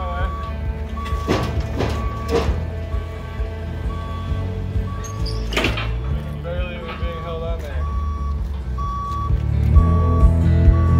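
Background music with a short, even beep repeating about every 0.7 seconds, typical of a forklift's motion alarm. A voice speaks briefly a little after the middle.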